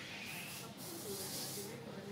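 A soft hiss lasting about a second and a half, over faint voices.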